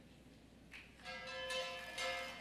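Flat bronze gongs (gangsa) of a Cordilleran ensemble start to be struck about a second in, each stroke ringing on with bell-like tones as the music for the cultural dance begins.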